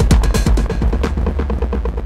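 Electronic drum pattern run through a lo-fi filtered digital delay, the fast repeating hits fading away. About a second in, the treble drops out and the echoes turn darker.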